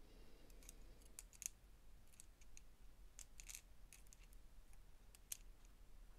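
Faint, sparse metallic clicks of small steel planetary gears and a metal tool being fitted onto their axles in a cordless drill's gearbox, with two sharper clicks, about a second and a half in and near the end.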